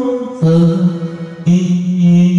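A man singing long held notes through a karaoke microphone over a karaoke backing track; the pitch steps down about half a second in and a new note starts about a second and a half in.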